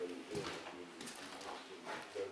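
Pigeons cooing in low, wavering calls, with a few short scraping noises.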